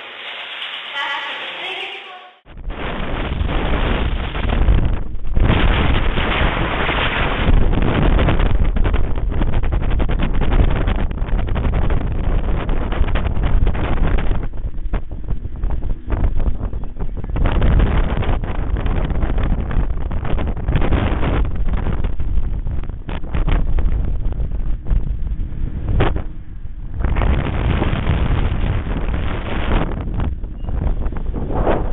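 Strong wind buffeting the camera microphone in gusts: a loud, low rumble that surges and eases, setting in suddenly about two seconds in.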